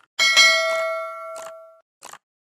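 Notification-bell ding sound effect: one strike with several ringing tones that fade out over about a second and a half, with a short click partway through.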